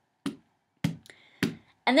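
A hand tapping on a desk to keep a steady beat: three taps a little over half a second apart.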